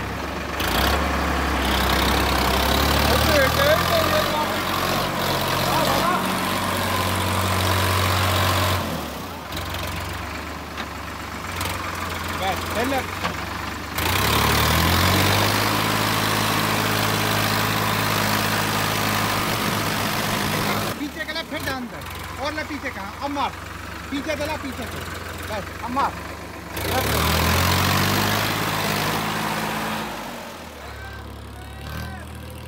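Sonalika tractor's diesel engine working under load. The engine note climbs sharply about a second in, again about halfway through, and again near the end. Each time it holds high for several seconds, then drops back.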